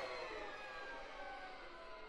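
The dying tail of a loud crash in the music, fading steadily, with faint held tones lingering under it.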